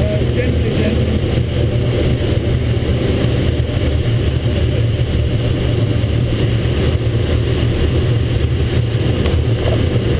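Steady, loud rush of airflow and wind inside a Grob G103 glider's cockpit on aerotow, a constant low rumble that does not change.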